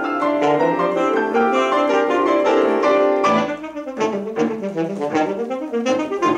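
Alto saxophone and grand piano playing a classical sonata together. Held notes give way about three seconds in to a quick passage of short, detached notes.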